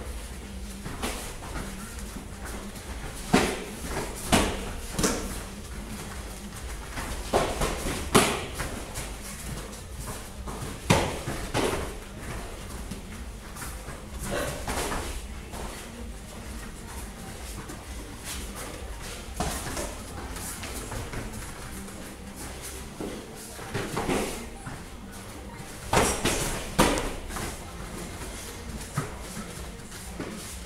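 Kickboxing sparring: gloved punches and kicks landing on the opponent and their protective gear, heard as sharp smacks at irregular intervals a few seconds apart, some in quick pairs, over a steady low hum in a large hall.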